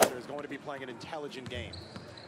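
Basketball being dribbled on a hardwood gym floor in a large hall, with quieter voices underneath.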